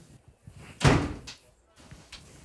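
A door slamming shut: one heavy thud just under a second in that dies away quickly.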